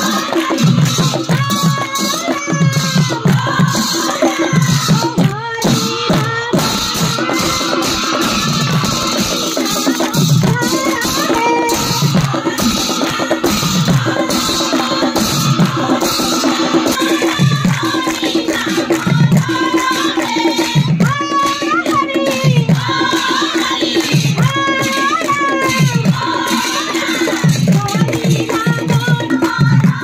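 A chorus of women singing an Assamese devotional song together, with hand-clapping and a low beat about once a second.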